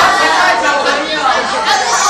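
Several young people's voices talking at once: indistinct chatter among a group of students.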